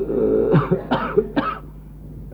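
A man's throaty, phlegmy vocal sound followed by three harsh coughs in quick succession, about half a second apart: a performed imitation of a heavy smoker's morning cough.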